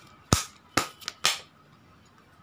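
Tarot cards being handled: four sharp snaps in quick succession in the first second and a half, the first the loudest.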